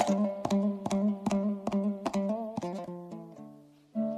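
Kazakh dombra playing a kui, strummed in regular rhythmic strokes over a steady two-string drone. About three seconds in the strumming stops and the notes ring and die away, then it starts again loudly right at the end.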